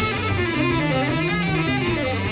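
Live instrumental band jam: electric bass and drum kit with a steady cymbal pattern, and a guitar line over them.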